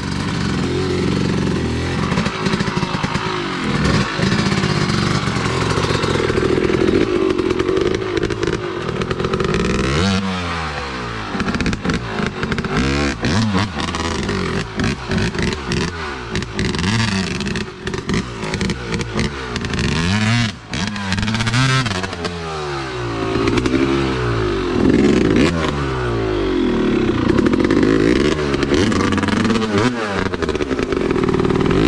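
Dirt bike engine revving, fairly steady at first, then rising and falling in pitch again and again, about once a second, from about a third of the way in.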